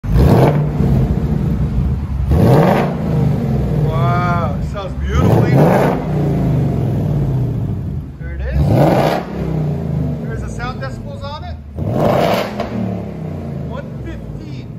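Ford Mustang Mach 1's 5.0-litre Coyote V8 on its stock exhaust, idling and revved in five quick blips, each climbing and dropping back to idle. A voice speaks briefly between the revs.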